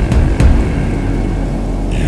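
Storm wind buffeting a microphone on a ship's deck in a heavy sea, a loud low rumble with two hard thumps in the first half second, under music.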